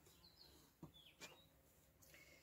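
Near silence: room tone with a few faint, short high chirps and a couple of faint small clicks around a second in.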